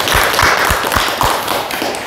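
Applause: steady rhythmic clapping, about four claps a second, fading out near the end.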